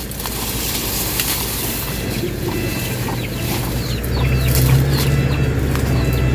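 Chicken-like clucks and short bird chirps over a steady low hum that gets louder about four seconds in, with scattered clicks and rustles as cut sugarcane stalks are handled.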